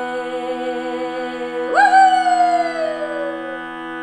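Steady shruti box drone of several held reed notes under a woman's folk singing: a held, slightly wavering note, then about two seconds in a loud whooping 'woo-hoo' that jumps up and slides slowly down in pitch.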